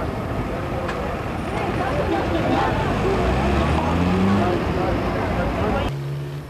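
Street sound from a crowd: people talking over the low rumble of a motor vehicle nearby, with a low tone that rises in pitch about four seconds in.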